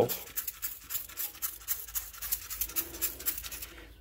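Quiet, rapid crackling from beer-spritzed beef short ribs sizzling on the grate of a charcoal grill.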